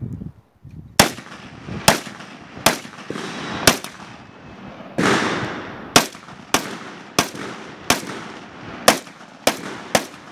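Gunshots fired one at a time in a steady string: about a dozen single shots, roughly a second or less apart with a longer gap partway through. Each shot is followed by a short echo.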